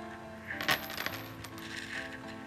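Coin-clinking sound effect about half a second in, a quick run of bright metallic clinks with a short ring, over steady background music.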